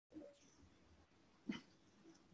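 Near silence, broken by two faint short sounds, the louder one about one and a half seconds in.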